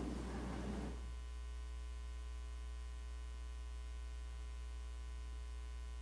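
Steady low electrical mains hum with a faint buzz of evenly spaced overtones above it, picked up through the chamber's microphone and sound system.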